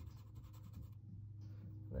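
Graphite pencil shading on sketchbook paper: faint, rapid back-and-forth strokes scratching across the page.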